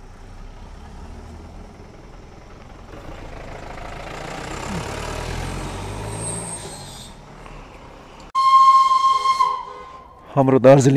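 A hissing rush of noise that swells for a few seconds and fades, then a sudden loud horn blast, one steady high tone about a second long, near the end.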